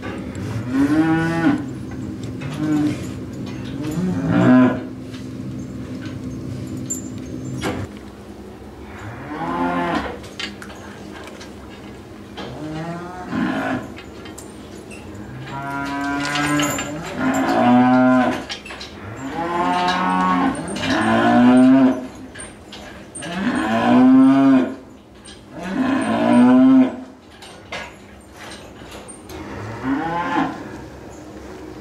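Chained black-and-white dairy cows mooing repeatedly, about a dozen calls, sparse at first and then coming every two seconds or so in the second half. A steady hum underlies the first eight seconds or so, then stops.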